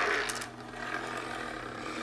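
Rustling and rubbing handling noise close to the microphone as a plastic doll is moved about, with a few clicks in the first half-second.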